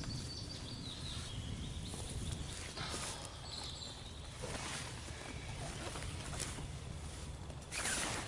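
Gear being handled and packed into a padded fabric bag: fabric rustles, loudest about three seconds in and just before the end. A bird calls faintly about a second in, over a steady low rumble.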